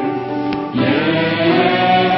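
Worship singing: two women lead a Korean praise song on microphones, with many voices singing along. A short break between phrases comes about three-quarters of a second in, then the next sung line begins.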